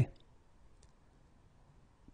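The last syllable of a spoken word at the very start, then near silence with one or two faint, short clicks.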